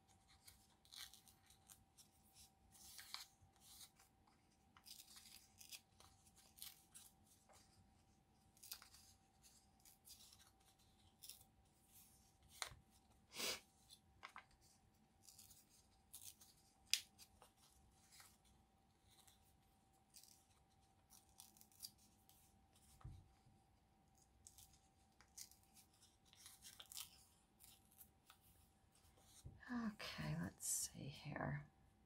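Faint hand-tearing and rustling of thin printed paper: scattered small rips and crackles coming in short, irregular bursts, with a faint steady hum underneath.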